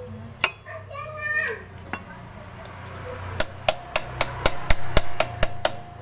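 Hammer blows on a steel rod driven into wet paper packed in the starter pinion bushing's bore in a scooter crankcase: one strike near the start, then about ten quick strikes in the second half, each with a metallic ring. The packed wet paper is hydraulically pushing the worn, loose bushing out of the crankcase.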